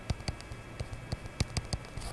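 A stylus tapping and ticking against a tablet screen during handwriting: a string of small, irregularly spaced clicks over a faint low hum.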